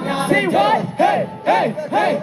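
Live K-pop concert: rhythmic shouted vocals, about two shouts a second, with the crowd over the song, its bass dropped out.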